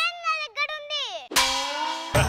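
A child's high voice speaking, then about a second and a half in a sudden loud metallic clang that keeps ringing on a steady tone.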